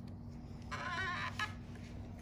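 A bird calling: one short warbling call about midway, then a brief second note right after, over a steady low hum.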